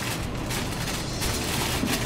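Aluminium foil crinkling and rustling as gloved hands wrap it and roll it tight, an uneven crackle throughout.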